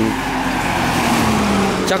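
A motor vehicle passing close by: a hiss of tyre and road noise swells toward the end, over a steady engine tone that drops slightly in pitch.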